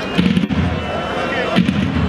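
A heavy drum beat repeating about every second and a half under a high, wavering reed melody: davul-and-zurna music of the kind played at Turkish oil wrestling.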